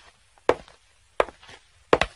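Light footsteps at a steady walking pace, about one every 0.7 s, each step a quick double tap.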